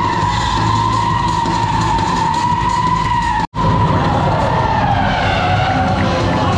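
Stunt car drifting in circles, its tyres squealing in a steady high screech over the engine's low rumble. The sound breaks off for an instant a little past halfway, then the squeal wavers and sinks in pitch.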